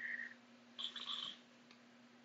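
A man's faint breathing through the nose, two short sniffs, the second about a second in, with his hand at his nose. A faint steady hum runs underneath.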